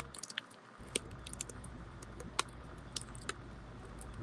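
Faint, scattered small clicks and taps over a low steady hum, about five in all, the sharpest about two and a half seconds in.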